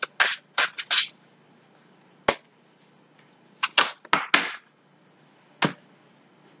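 A deck of tarot cards being shuffled and handled: short papery swishes and a few sharp clicks in three quick clusters, with quiet gaps between.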